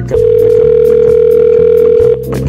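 Telephone ringback tone: one steady ring about two seconds long, the sign that a dialled call is ringing at the other end. A low background beat runs beneath it.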